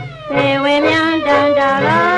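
A song playing: a high melodic line dips at the start, then holds notes and slides up into the next near the end, over a steady beat of about two pulses a second.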